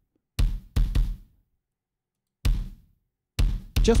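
Drum-and-bass kick drum, a layered triggered kick, playing back from the mix with its Decapitator saturation switched off: about six hits in an uneven pattern, with a silent gap of over a second in the middle.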